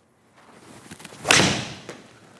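Six iron striking a golf ball off a hitting mat: a rising swish on the downswing, then one sharp smack just over a second in that rings off briefly.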